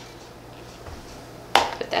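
Quiet kitchen room tone with a faint steady hum. About one and a half seconds in, a short sharp sound breaks in, just before speech starts.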